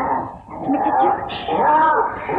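Wordless vocal sounds: pitched and gliding up and down in short stretches, with a brief dip about half a second in.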